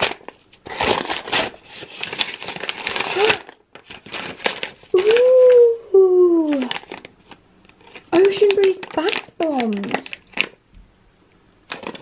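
Paper gift wrap crinkling and tearing as a present is unwrapped, followed by a few long, sliding vocal sounds without words.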